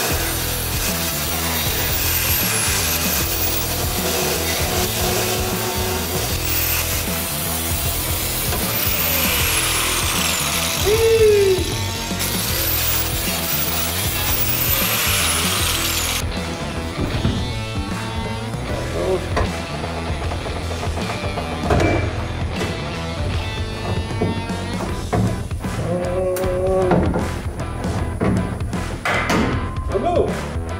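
Grinder with a cutting wheel cutting through the tack welds that hold a steel subframe connector bar to a car's floor: a steady, harsh grinding that stops abruptly a little past halfway. After it come scattered light metal knocks as the bar is worked loose, with background music.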